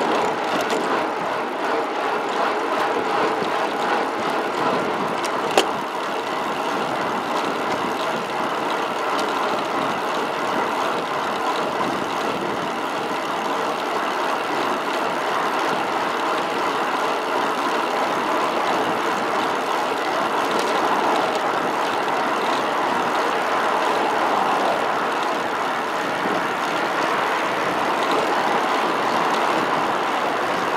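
Steady rush of highway traffic and road noise heard from a road bike riding along a busy highway, with one sharp click about five and a half seconds in.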